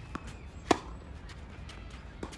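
A tennis racket strikes the ball once, a sharp loud pop about two-thirds of a second in, with a fainter tap shortly before it.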